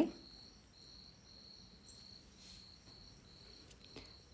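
A cricket chirping faintly in the background: a high, thin trill pulsing at an even rate.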